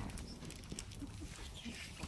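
Faint scattered clicks and rustles over a low rumble, from a hand-held phone camera being moved about.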